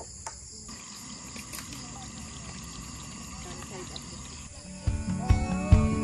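Insects droning steadily at a high pitch over quiet outdoor ambience. About five seconds in, loud plucked-guitar music starts and takes over.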